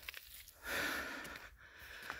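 A man's breath, one noisy breath of about a second, from someone out of breath while climbing a steep hill.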